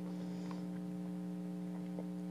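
Steady electrical hum made of several steady tones, with only a faint click or two from the spoon and mouth about half a second in.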